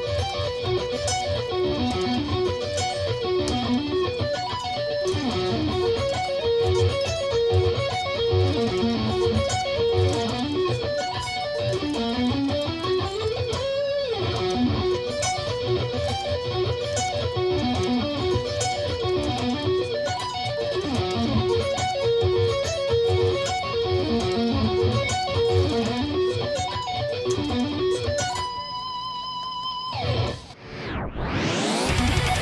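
Electric guitar playing sweep-picked arpeggios slowly: B minor and F sharp major triad shapes with a melody on top, repeating in up-and-down patterns. A rising run of notes comes about halfway through, and the passage ends on one held high note near the end.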